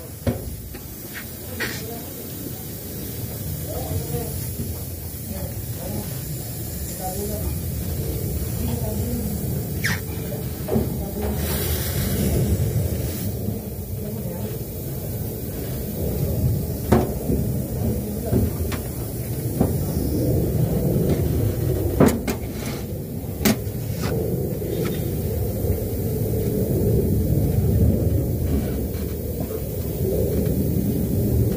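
Clicks and knocks of hands and fittings on a split-type air conditioner's outdoor-unit service valve and charging hose, while the line is pressurised to test the pipe for leaks. There is a short hiss of gas about twelve seconds in, over a steady low rumble.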